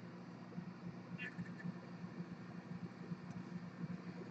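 Quiet room tone with a faint steady low hum and soft, irregular handling sounds as a trading card is turned over in the fingers.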